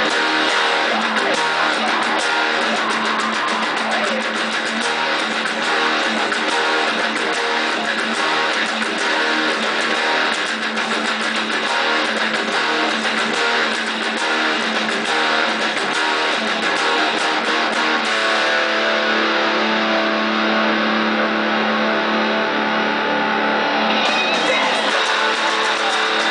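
Electric guitar played through an amplifier, picking and strumming the chord parts of a rock song. It settles into more sustained, ringing chords for the last few seconds.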